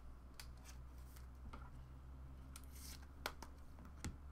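Faint handling of trading cards: a handful of light clicks and short scrapes as cards are set down and slid off a stack, the sharpest a little past three seconds in.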